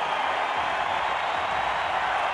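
Large crowd cheering and applauding steadily, a dense wash of many voices and clapping.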